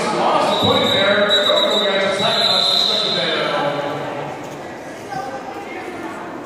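Indistinct voices echoing in a large arena hall, with a thin, high, steady tone held for about two and a half seconds near the start. The voices grow quieter in the second half.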